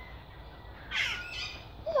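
A caged bird gives a short, harsh squawk about a second in, followed by a fainter second call. A voice saying "hello" starts at the very end.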